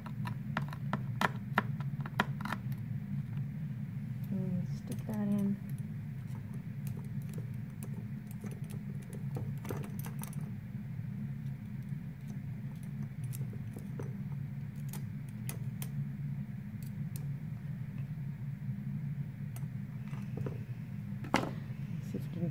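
Knife blade tapping on a plastic tray while spinach is chopped finely: a quick run of sharp clicks in the first few seconds, then scattered clicks and knocks later. A steady low hum runs underneath.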